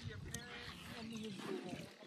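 Wind buffeting the phone's microphone, a low rough rumble, with faint voices talking in the background.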